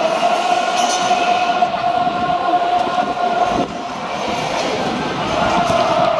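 Stadium ambience carrying a long, steady held tone that breaks off about three and a half seconds in and comes back near the end.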